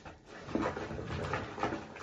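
Wet sponges squeezed and pressed in soapy bathwater, a run of short squelching squishes about every third of a second.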